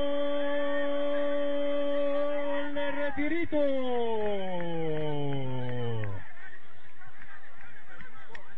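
A loud, steady horn-like tone with many overtones. About three and a half seconds in it slides steadily down in pitch over a couple of seconds, then cuts off abruptly.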